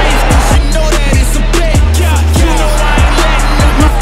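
Hip-hop music track: a deep bass that repeatedly slides down in pitch under a steady, busy beat.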